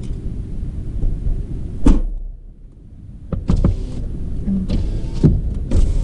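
Low rumble inside a car, broken by sharp clicks and knocks about two seconds in and again in the second half. The rumble drops away for about a second in the middle, then comes back.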